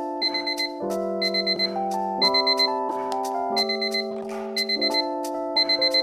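Alarm clock beeping in groups of about four quick high beeps, repeating roughly once a second, over background music with sustained keyboard chords.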